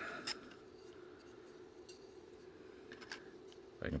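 Light clicks and taps of plastic harmonic-drive gear rings and a bearing carrier being handled and fitted together by hand: a few scattered clicks over a steady low hum.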